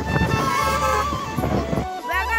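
Road traffic passing, with background music playing over it.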